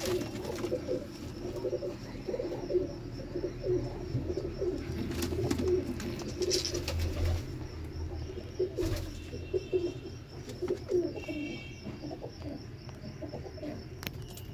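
Domestic pigeons cooing: a steady run of low, repeated coos throughout.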